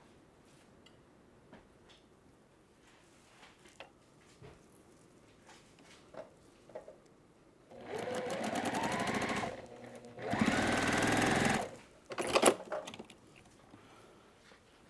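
Juki sewing machine stitching a seam in two runs of about two seconds and a second and a half with a short pause between, its motor pitch rising as it speeds up. A few sharp clicks follow, after faint ticks of fabric being handled earlier on.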